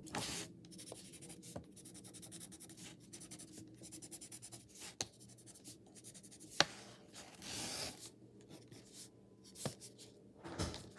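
A pen scratching across paper laid on a paper plate in quick, short strokes while drawing. There is a sharp tap about two-thirds of the way through.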